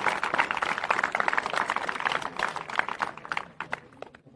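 A crowd clapping after a kick lands, a dense patter of hand claps that thins and dies away over about four seconds.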